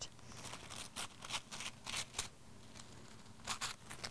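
Colored tissue paper handled and torn by hand: faint, short crinkling and tearing sounds, coming in several separate clusters.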